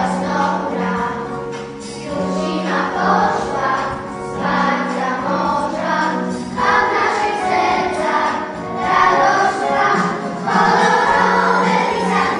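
A group of children singing together as a choir, in phrases that swell and fall, over a held low accompaniment note.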